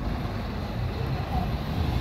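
Diesel bus engines running at the bus station: a steady, low-pitched engine noise.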